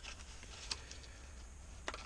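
Quiet hand handling of a small spare-bulb box, with a faint click about two-thirds of a second in and a sharper click near the end.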